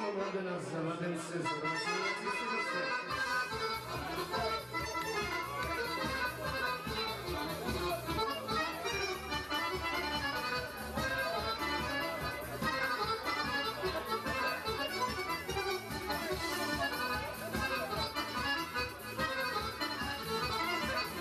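Accordion-led folk dance music with a steady beat, the beat and bass coming in about three seconds in; people talk under it.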